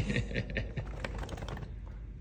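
A laugh trailing off, then a quick run of light ticks and taps for about a second and a half before it fades.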